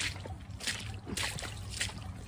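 Footsteps squelching and splashing through wet mud and shallow puddles at a steady walking pace, a soft stroke about every half second.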